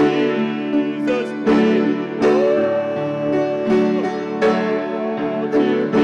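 Hymn played on piano, plucked upright bass and accordion, with sustained chords and a held melody note that bends near the middle.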